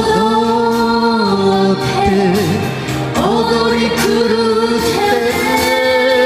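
Japanese ballad sung as a duet over a karaoke backing track, in long held notes with vibrato: one phrase swoops up into a held note at the start, and another begins about three seconds in.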